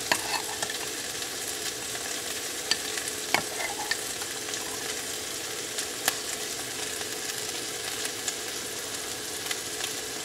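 Turkey sausage sizzling steadily in a frying pan, with a few sharp clicks and taps from a knife and jar handled over the plate, the clearest about three and a half and six seconds in.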